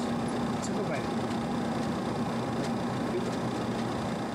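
Steady ventilation and equipment hum of an airliner cockpit, with faint crew voices in the background.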